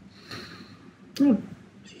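A man's short, thoughtful "hmm" about a second in, falling in pitch, just before he starts to answer.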